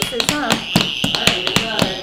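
Plastic toy hammers tapping golf tees into a padded pounding board: a quick, irregular run of light taps. A high-pitched squeal lasts about a second in the middle.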